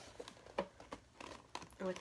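Light handling of an opened cardboard box: a few faint taps and rustles as it is held up, with a spoken word right at the end.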